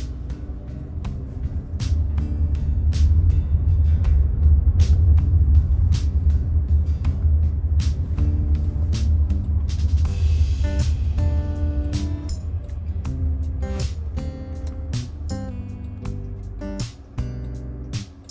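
Music with a steady beat over the low rumble of a car driving, the rumble easing off in the last few seconds.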